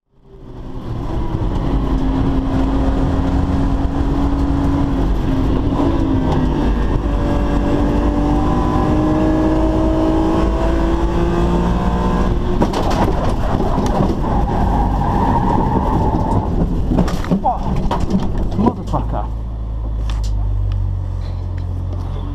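In-cabin sound of a BMW E46 M3 race car's straight-six engine pulling hard, its note steady and then rising, over tyre and wind noise. Near the end comes a run of bangs and scrapes as the bolt holding the wishbone to the hub fails and the car crashes, after which only a low rumble is left.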